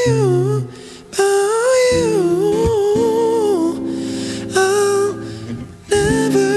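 A man humming a wordless melody in a high falsetto over acoustic guitar chords, the voice line bending up and down, with brief breaks about a second in and just before the end.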